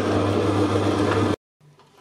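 Electric stand mixer running steadily with its dough hook, kneading yeast dough in a stainless steel bowl: a constant motor hum that cuts off suddenly about a second and a half in.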